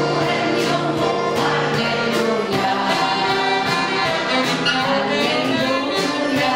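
A hall full of people singing along in unison to a live band led by piano, with drums keeping a steady beat.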